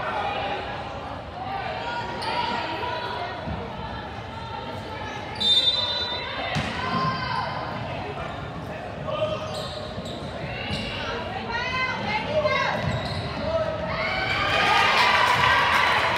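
Basketball game heard from the stands of a gym: a ball dribbling on the hardwood, sneakers squeaking, and players and spectators calling out, echoing in the large hall. It gets louder near the end.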